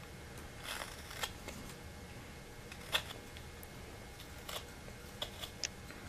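Carving knife with a ground-down Mora laminated carbon-steel blade slicing small chips off basswood. About six quiet, short cuts are scattered through the stretch, with the clearest about three seconds in.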